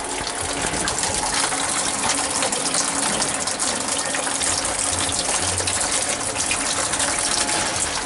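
Water from a camper van's freshwater tank pouring out of the opened drain valve and splashing steadily into a tub set underneath, as the tank is emptied for winter.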